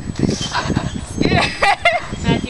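People laughing: breathy laughter at first, then high-pitched giggles in the second half.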